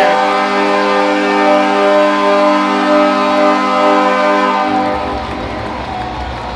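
Ice hockey arena horn sounding one long steady blast at the end of the game, fading out about five seconds in.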